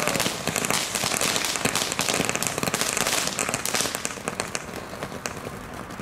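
Several firework ground fountains burning together, a rushing hiss of sparks dense with small crackles, dying down over the last couple of seconds.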